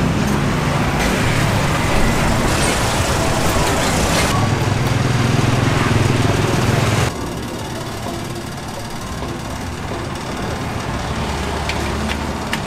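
Street-market background noise with traffic: a steady, even wash of sound that shifts abruptly several times and drops noticeably about seven seconds in.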